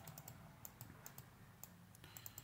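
Faint, irregular small clicks and taps of a digital pen on a screen as handwriting is drawn.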